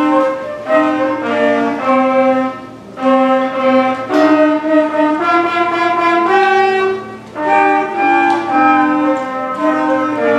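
Sixth-grade concert band playing: held wind and brass notes and chords moving in phrases, with short breaths between phrases about 3 and 7 seconds in.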